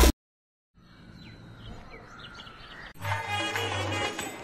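Loud intro music cuts off, followed by a brief dead silence, then faint outdoor ambience with birds chirping. About three seconds in, background music starts with a steady low bass note.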